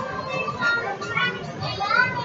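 Background voices, children among them, chattering over music.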